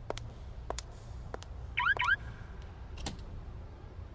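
Quiet, sparse intro sound effects: sharp clicks about every two-thirds of a second over a low hum, with two quick rising chirps about two seconds in.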